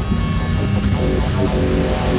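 Electronic music: held synthesizer notes over a heavy, steady low bass rumble.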